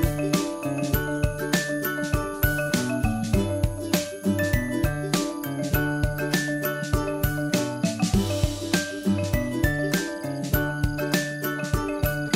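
Background music: a melody of short pitched notes over a steady beat.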